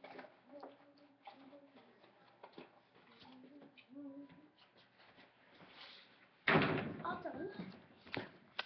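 Faint voices in the background, then a sudden loud noise about six and a half seconds in that fades over a second or so, with a voice over it.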